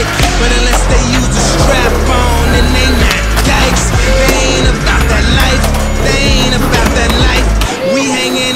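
Hip-hop track with a heavy bass beat playing over skateboard sounds: wheels rolling on concrete, the pop and landing of a kickflip, and a board sliding along a ledge. The bass drops out shortly before the end.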